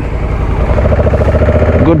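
Honda Africa Twin's parallel-twin motorcycle engine running steadily, its note changing about half a second in.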